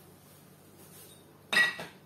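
A hard kitchen item set down or knocked on the counter: one sharp clink with a brief ring about a second and a half in, followed by a softer knock.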